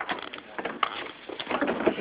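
Irregular crunching and rustling of loose oats as a shovel is worked into them.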